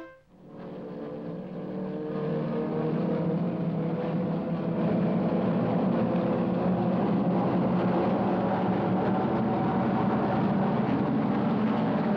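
Race car engines running at high revs, fading in over the first few seconds and then holding steady.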